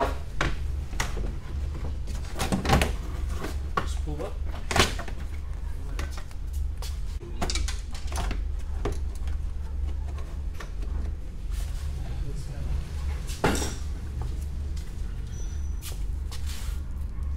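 Plastic trunk trim being pulled loose and handled inside a car's trunk: scattered knocks and clicks, with sharper ones a few seconds in, near five seconds and toward the end, over a steady low hum.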